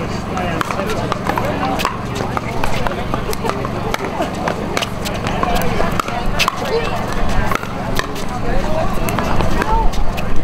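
Pickleball paddles hitting the hollow plastic ball in a rally: sharp pops about every second or so, some from neighbouring courts, over a steady hubbub of voices.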